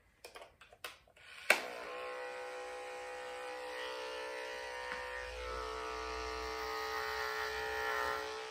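Corded electric grooming clipper switched on with a sharp click about a second and a half in, after a few small handling clicks, then running with a steady buzzing hum while it clips the hair on a Schnauzer's face.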